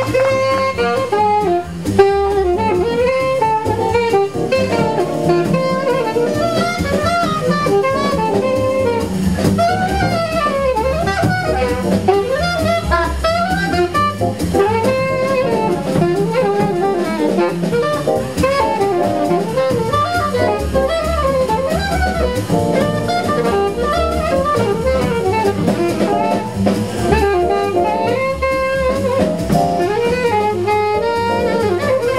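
Live jazz combo: a saxophone solo of quick, flowing runs over upright bass, stage piano and drum kit.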